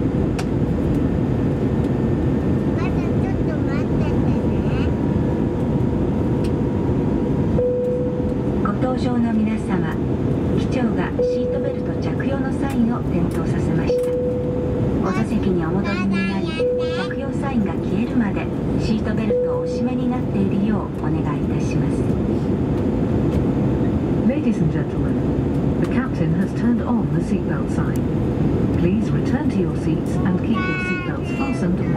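Steady jet-engine and airflow noise heard inside the cabin of an Airbus A320-200 on final approach, with a Japanese cabin announcement over it.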